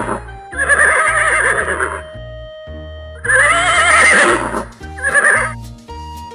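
Horse whinnying three times over background music, the last whinny short.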